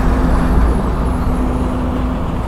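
Steady low rumble of a vehicle engine running nearby, with a faint steady hum over it.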